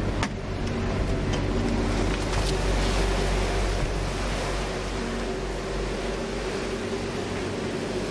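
Steady running of the refrigeration units that keep an ice bar frozen: an even rushing fan noise over a low rumble, with a few faint steady hum tones. A light click comes near the start.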